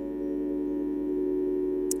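Nord Stage 2 keyboard holding a soft sustained chord of several steady notes, growing slightly louder through the pause.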